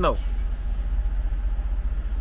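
Steady low rumble of a semi truck's diesel engine idling, heard from inside the cab.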